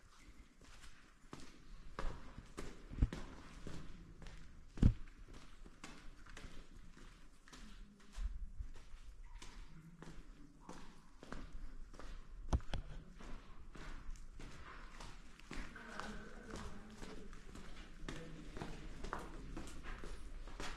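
Steady footsteps walking along the floor of a salt-mine tunnel, with a few louder knocks among them and faint voices in the background.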